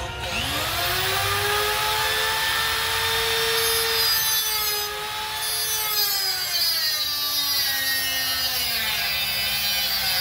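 Angle grinder spinning up with a rising whine just after the start, then grinding a steel bar. Its pitch sinks from about six seconds in as the disc is pressed into the metal and slows under load.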